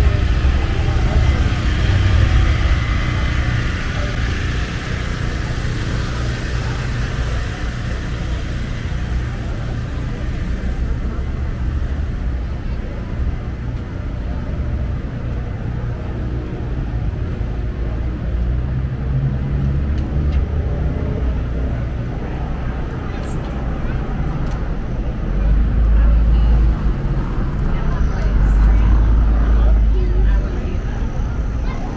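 City street ambience: steady traffic noise from cars on the adjacent street, with people's voices in the background. A heavier low rumble comes in the last few seconds.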